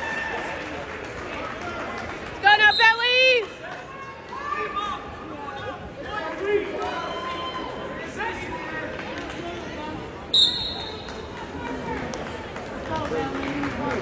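Gym crowd chatter with scattered voices and a loud shout a couple of seconds in, then a short, sharp referee's whistle blast about ten seconds in, the signal that starts the wrestling period.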